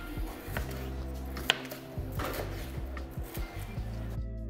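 A chef's knife slicing a green bell pepper on a plastic cutting board: a few separate cutting strokes knock on the board, the sharpest about one and a half seconds in. Background music plays steadily underneath.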